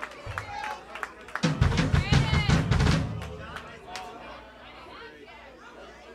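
A drum kit played briefly between songs: a quick run of bass drum and snare hits lasting about a second and a half, then dying away under people chattering.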